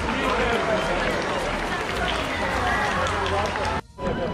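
Crowd of many people talking at once, voices overlapping, with a low rumble underneath; the sound cuts out abruptly just before the end.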